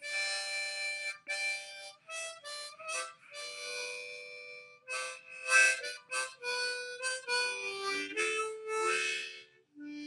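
Diatonic harmonica in C played one note at a time, a run of short blown and drawn notes moving up and down the scale with brief breaks between them. The lowest notes come near the end.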